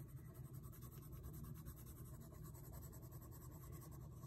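Faint scratching of a red coloured pencil shading lightly over paper, softening the earlier hatching.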